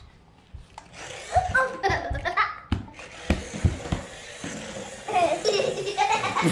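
People laughing, building up louder near the end, with a few short, sharp knocks and clicks in the middle.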